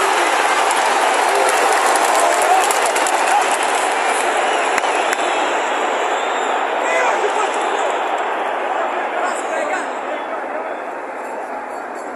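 Large football stadium crowd: a dense, steady din of many voices, easing a little in the last few seconds.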